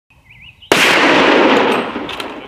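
A single very loud rifle shot about two-thirds of a second in. Its report rolls on for about a second before fading.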